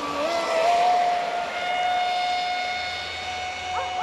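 Traxxas Spartan RC boat running fast: the steady high whine of its Leopard brushless motor, which climbs in pitch over the first second as the boat speeds up and then holds, over a steady hiss.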